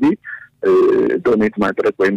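Speech only: a narrator reading the news in Amharic, with a brief pause near the start.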